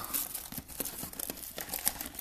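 Plastic wrapping on a trading-card hobby box crinkling and crackling in rapid small clicks as hands turn and handle the box.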